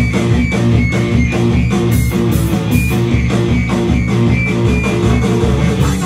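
Live rock band playing without vocals: electric guitars, bass and drums with a steady, even beat.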